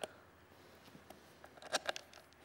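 Small clicks and taps of hands fitting screws into a linear air pump's chamber block: one click at the start, a few faint ticks around a second in, and a quick cluster of clicks near the end.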